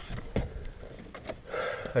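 Handling noises of someone reaching into the front of a minivan to grab a small item: a few sharp clicks and knocks and a short burst of rustling near the end, with crickets chirping faintly.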